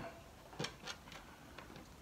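A few faint knocks and ticks of hard plastic parts being handled: the upturned kayak tackle pod and the transducer on its mount. The knocks come about half a second into a near-quiet stretch, then twice more a little later.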